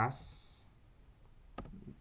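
One sharp computer-keyboard keystroke click about a second and a half in, followed by a few faint key taps.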